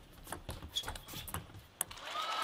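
Table tennis rally: the plastic ball clicks sharply off the rackets and the table in a quick run, about four clicks a second, with the loudest one near the end.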